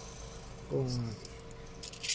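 A metal gas-blowback pistol magazine being handled, with light metallic clinks and rattles.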